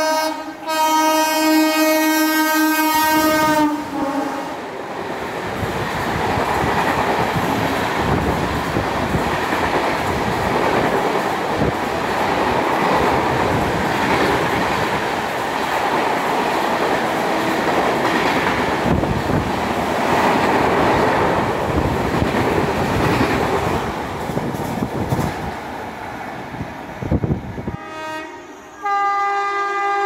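An Indian Railways express train sounds its horn in a long multi-tone honk, then runs through the station at speed with a steady rush and wheel clatter for over twenty seconds. Near the end a second train's horn starts honking.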